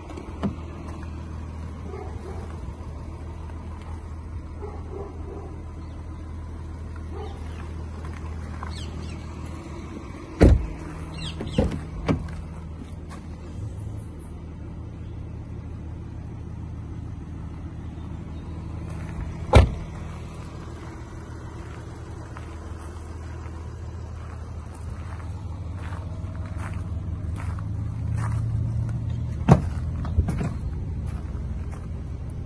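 A Porsche Macan S's 3.0 V6 diesel engine idling steadily, a little louder near the end. It is broken by a few sharp thuds of the car's doors being opened and shut, the two loudest about ten and twenty seconds in, and another just before the end.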